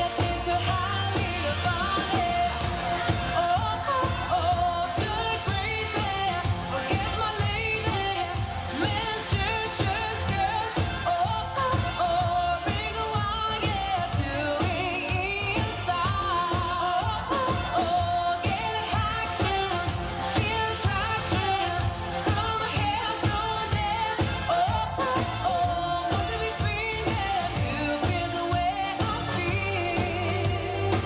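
Live dance band playing a pop song, with a woman singing lead into a microphone over keyboards and a steady beat.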